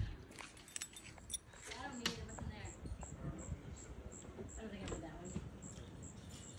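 Faint voices in the background, with a high insect chirp repeating about three times a second from about two seconds in.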